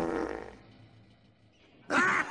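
Animated cow-like tractors letting out a loud, startled moo-like bellow as they are tipped over, fading away within about a second.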